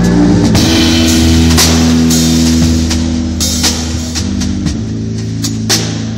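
Live jazz band playing: a drum kit with repeated cymbal strikes over sustained low notes from an electric string instrument.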